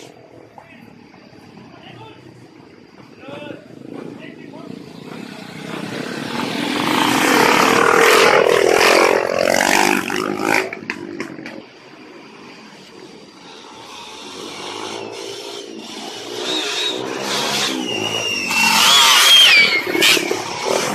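Dirt bike engines passing close by on a narrow trail: one bike comes up, is loudest about eight to ten seconds in and drops away, then another approaches and grows loud near the end.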